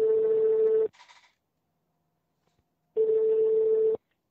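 Telephone ringing tone heard by the caller on an outgoing call: a steady single-pitched tone about a second long, twice, with a two-second gap between, and a brief crackle on the line just after the first ring.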